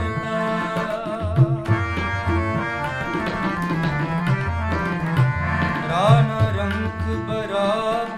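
Sikh shabad kirtan: a harmonium holding chords while tabla keep a rhythm, the low drum's pitch bending, with a voice singing wavering, gliding notes over them.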